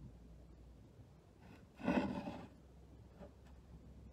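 Quiet room tone with one brief rubbing, handling sound about two seconds in, from fingers working a silicone mould and syringe.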